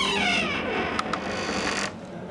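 Squeaky sound effect with several pitches falling together at the start, then a hiss marked by two sharp clicks about a second in, cut off abruptly near the end.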